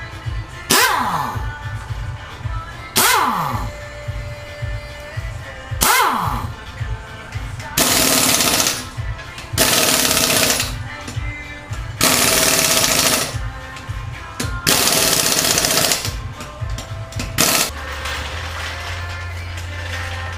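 Pneumatic impact wrench on a car's wheel lug nuts: three short spins whose pitch falls away in the first few seconds, then five hammering, rattling bursts of about a second each, over background music.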